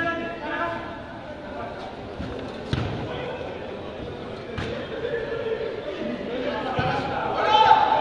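A football being kicked during play on an artificial-turf pitch, a few sharp thuds echoing in a large covered hall, with players calling out at the start and near the end.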